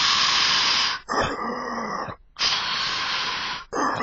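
Mechanical respirator breathing sound effect in the style of Darth Vader: slow, regular hissing breaths, four in all, each about a second long, with a low hollow tone under every second one.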